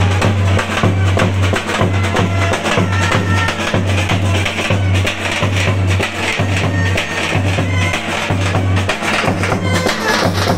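Street band playing a lively tune: a large bass drum and a snare drum keep a steady beat under a saxophone melody.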